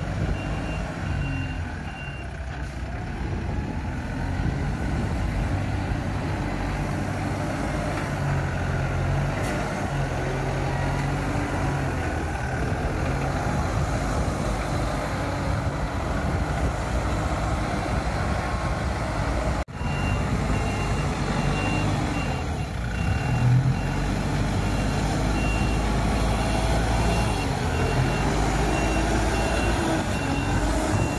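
A Kaystar Pioneer45 4WD all-terrain forklift's engine running steadily as the machine drives through mud. Its reversing alarm beeps in an even series at the start and again through the last third.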